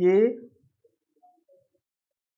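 A man's voice saying one short word with a rising pitch, then near silence: room tone.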